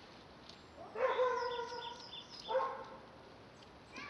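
A drawn-out pitched cry lasting over a second, starting about a second in, followed by a shorter cry about a second later.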